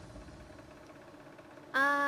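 Faint background music dying away, then a quiet stretch; near the end a woman's voice holds a short, steady 'uh' at one pitch.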